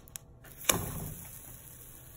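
A pancake flipped with a metal spatula in a frying pan: one sharp clack of the spatula against the pan about two-thirds of a second in, with a soft thud as the pancake lands, then a faint steady hiss.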